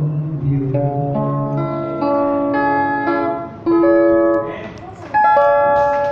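A man singing with guitar accompaniment, in a slow song of long held notes; the two loudest notes come around the middle and near the end, with a few guitar strums at the close.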